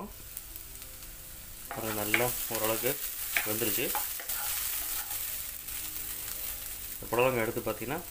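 Diced snake gourd and carrot sizzling in oil in a non-stick frying pan and being stirred with a wooden spatula; the sizzle grows louder as the lid comes off at the start. A voice comes in briefly a few times.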